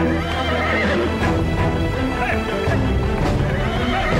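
Horses under dramatic soundtrack music: a horse whinnies within the first second, with hoofbeats of the pursuing horses.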